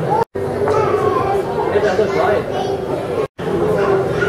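Indistinct chatter of many visitors talking at once in a large hall. The sound cuts out for an instant twice.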